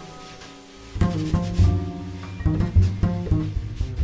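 Jazz piano trio playing a slow ballad, with the plucked double bass to the fore over piano and light drums. The music is soft and sparse for the first second, then the bass notes come back in.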